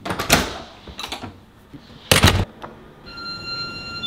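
A door handle and latch clicking, then a door shutting with a thud about two seconds in. About three seconds in, a steady electronic beep starts and holds.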